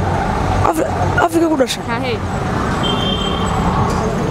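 Steady street traffic noise, with short fragments of voices in the first two seconds.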